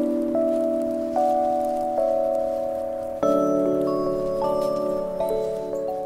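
Background music: soft, sustained chime-like notes and chords, with a new note entering every second or so and a fuller chord change about three seconds in.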